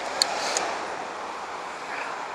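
Road traffic: the rush of a passing vehicle's tyres on the road, loudest about half a second in and then fading, with one short click near the start.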